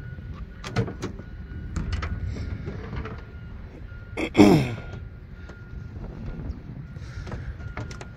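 Tailgate of a 2019 Ford F-150 pickup being unlatched and lowered: a few sharp clicks from the handle and latch in the first two seconds. About four and a half seconds in comes a loud, brief sound falling steeply in pitch.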